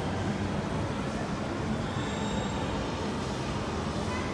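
Steady low rumble of indoor shopping-mall ambience, with no single event standing out.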